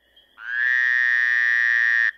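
Frog-call sound effect: one long, buzzy pitched call that starts about half a second in, rises slightly at first and is then held for about a second and a half before cutting off, over a faint high steady tone.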